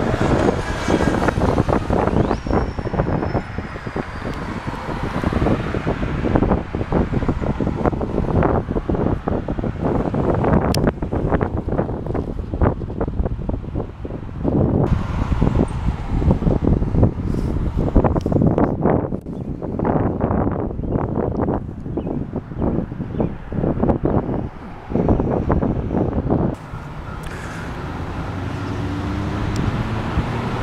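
Gusty wind buffeting the camera microphone in rough, irregular blasts, over the steady rush of road traffic. About four seconds from the end the buffeting eases, leaving a steadier rush that slowly grows louder.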